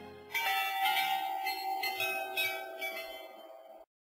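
The background music fades out. A peal of bells follows, with several strikes ringing over one another for about three seconds. It fades and then cuts off suddenly just before the end.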